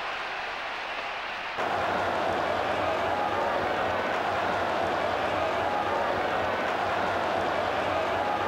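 Football stadium crowd cheering, a steady roar of many voices that steps up in level about a second and a half in.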